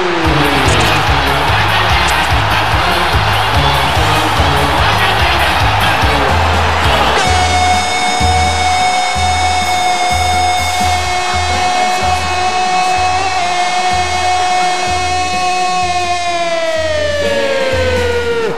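Radio goal celebration: a stadium crowd cheering over a music jingle with a steady low beat. About seven seconds in, a long held shouted note, the narrator's drawn-out goal cry, comes in, stays steady for several seconds and falls in pitch near the end.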